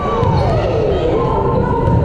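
Spectators in a gymnasium at a volleyball match: many voices calling and shouting over a steady crowd din, echoing in the hall, with one long falling call near the start.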